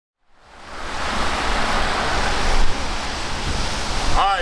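Street traffic on a wet, slushy road: a steady hiss of tyres on wet pavement over a low rumble, fading in at the start, growing louder, then dropping sharply about two and a half seconds in.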